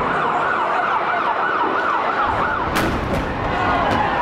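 Emergency vehicle siren yelping, its pitch sweeping up and down about four times a second. A low rumble comes in past the halfway point, with a sharp bang a little later and another near the end.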